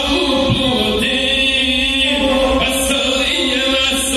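Gusle bowed in a continuous wavering line under a man's chanted epic singing, the traditional one-string fiddle accompaniment of South Slavic epic song.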